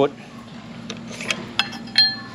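Light clinks and taps of a Starlink dish mast and its metal kickstand base knocking together while being handled, a few sharp strikes with short ringing in the second half, the last the loudest.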